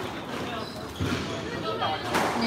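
A single dull thump about a second in, a squash ball bouncing on the court, over faint background voices.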